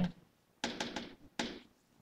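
Stylus tapping and scratching on a pen-tablet screen while handwriting, in two short spells about half a second and a second and a half in.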